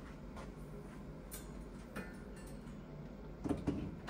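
A few faint clicks and knocks of hands working at wall-hung gas boilers as their power is switched on, with a louder cluster of knocks about three and a half seconds in.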